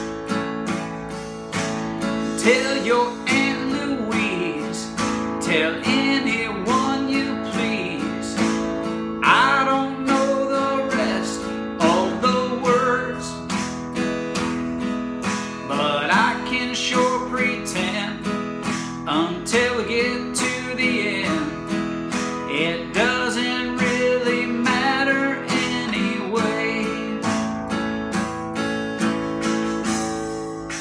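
Acoustic guitar strummed in a fast, steady down-up rhythm, switching between A and E chords, over a backing track with a wavering melody line.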